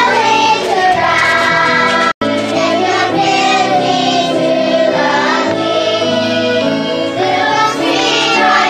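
A group of young children singing a song together, accompanied by violins. The sound drops out completely for a split second about two seconds in.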